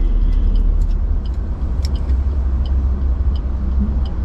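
Steady low rumble of a car heard from inside the cabin, with its engine idling. A few faint light clicks are scattered through it as sunglasses are unfolded and put on.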